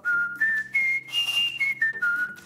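A man whistling a short run of clear, steady notes that step up in pitch four times and then come back down.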